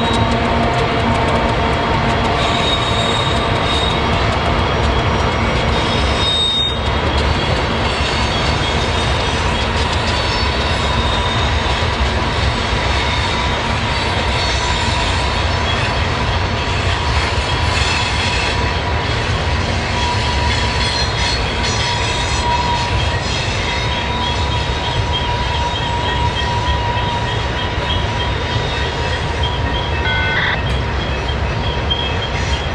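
Heavy freight work train's cars rolling across a steel trestle on a steep grade: a steady rumble with continuous thin, high wheel squeal over it.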